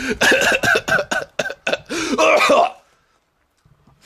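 A man laughing hard, the laughter breaking into coughs, and stopping about three seconds in.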